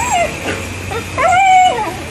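Dog whining at an excited greeting: a short falling whine at the start, then a longer, louder whine about a second in.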